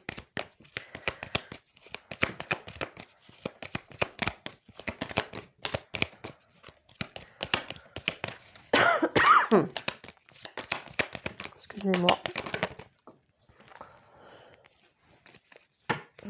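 A deck of oracle cards being shuffled by hand: a quick, uneven run of light card flicks and slaps for about thirteen seconds, then quieter. A person's voice sounds briefly about nine seconds in, falling in pitch, and again near twelve seconds.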